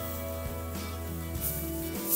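Background music: a soft track of sustained, held notes over a steady bass.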